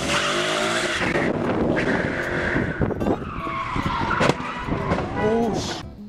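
Ford Mustang pulling away at full throttle and sliding out, its engine revving hard and its tyres squealing. There are a couple of sharp knocks in the middle, and people's voices near the end.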